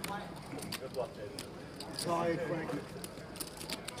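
Poker chips clicking irregularly as a player stacks a freshly won pot, with quiet voices at the table about halfway through.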